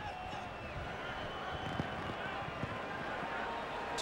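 Steady stadium crowd noise and field ambience picked up by the broadcast's field microphones during a football play, a low even wash with faint distant voices and no commentary.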